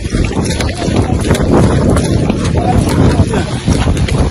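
Wind buffeting and handling noise on a phone's microphone, a loud, uneven rumble with scattered crackles, as the phone is carried on foot with its camera pointed at the ground.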